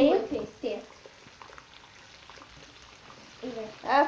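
Bacon frying in a pan, a faint even sizzle heard between girls' voices at the start and near the end.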